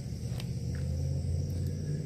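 A steady low rumble, with a light click about half a second in.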